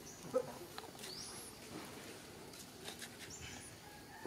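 Short high squeaks and whimpering calls from young monkeys, the sharpest about a third of a second in, with brief high rising chirps scattered through.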